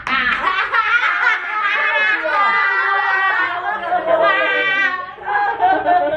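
Several young people laughing together, their laughter overlapping and carrying on without a break, with a short dip about five seconds in.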